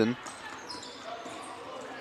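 Indoor basketball game sound on a hardwood court: players moving and the ball in play, over a steady murmur from the gym crowd.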